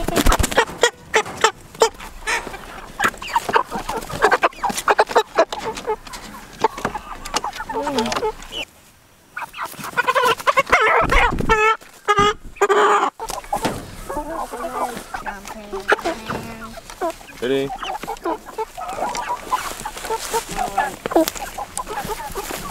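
White meat chickens clucking and squawking while they are being caught in their coop, with rustling and knocks from the handling. A run of loud, rising squawks comes about halfway through.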